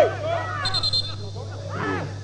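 Loud shouting from a man's voice, at its loudest right at the start, then a short trilling referee's whistle blast a little under a second in, stopping play for a foul. A steady low hum runs underneath.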